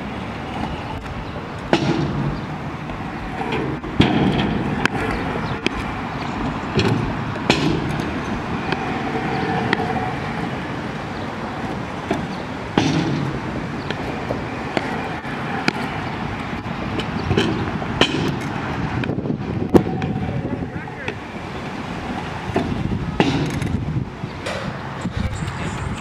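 Stunt scooter wheels rolling over concrete and a steel quarter-pipe ramp, with sharp clacks scattered throughout as the scooter lands and hits the ground.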